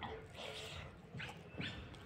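Close-up chewing and mouth smacking while eating a handful of rice, with a few short wet smacks.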